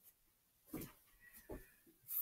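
Near silence: room tone with two faint, brief soft sounds, a little under a second in and again about half a second later, from a person shifting their body on a yoga mat.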